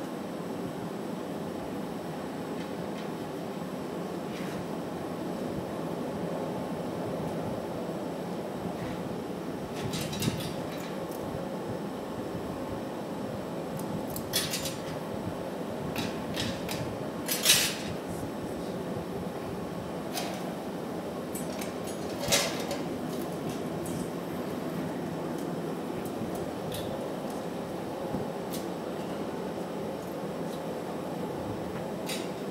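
Steady roar of a glassblowing studio's furnaces and exhaust fans, with a few sharp metallic clinks of tools against the steel marver table, the loudest about 17 seconds in.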